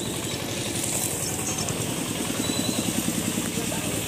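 A motor vehicle engine idling, a steady fast low pulse that is clearest in the second half, with voices in the background.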